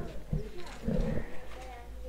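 Muffled, indistinct voices talking across a ticket counter, with a few short knocks.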